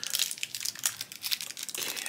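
Black foil blind-bag wrapper of a collectible pin pack crinkling and tearing as it is pulled open by hand: a quick, dense run of small crackles.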